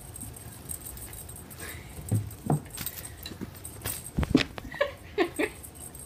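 A cat panting after hard play with a wand toy, ending in several short, pitched breath sounds. A couple of sharp clicks come a little past the middle.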